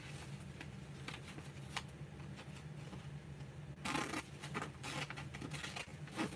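Glossy paper brochure rustling and crinkling as it is handled and folded, in scattered short rustles, with a louder rustle about four seconds in.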